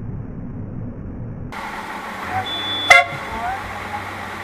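Low, muffled traffic rumble from among waiting motorcycles. About three seconds in, one short, sharp vehicle horn toot, the loudest sound here.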